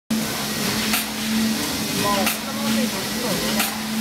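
Horizontal doypack pouch packing machine running: a steady hum and hiss with a short, sharp burst of noise about every 1.3 seconds as the machine cycles. Voices sound in the background.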